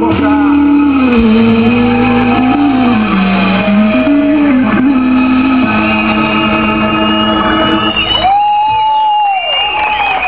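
Live band music at a loud level, with long held notes that slide up and down in pitch. The music breaks off about eight seconds in, and a voice calls out over the stage sound near the end.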